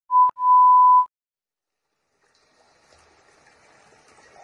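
Steady 1 kHz beep of a TV colour-bars test tone, broken by a short gap and click just after it starts, cutting off about a second in. Near silence follows, with a faint hiss near the end.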